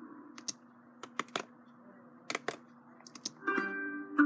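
Sharp clicking on a computer, in pairs and short runs of three or four, over a faint held note of a logo jingle. Near the end a new logo jingle starts, louder.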